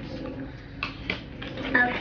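Packaging crinkling and rustling as small toy packets are torn open by hand, with a few sharper crackles about a second in.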